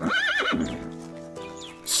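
A horse whinnying: one quavering call in the first half second, over background music with long held notes.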